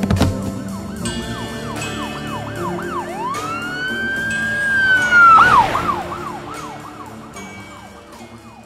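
An emergency-vehicle siren over background music. It yelps in quick up-and-down sweeps, changes to one long held wail for about two seconds, then goes back to the yelp. It grows louder up to about five seconds in and then fades away, with a sharp hit at the very start.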